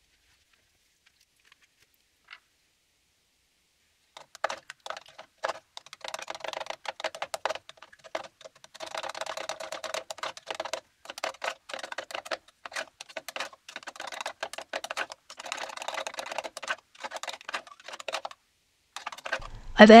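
A spoon stirring a yogurt and walnut oil dressing in a small plastic measuring cup: rapid clicking and scraping against the cup, starting about four seconds in and stopping just before the end.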